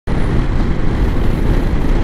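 Steady rush of wind and road noise from a Ducati Multistrada 950 motorcycle riding at speed on an open road, with no distinct engine note standing out.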